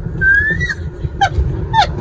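High-pitched squealing laughter: one long rising squeal, then three short falling squeals, over the low rumble of a car cabin.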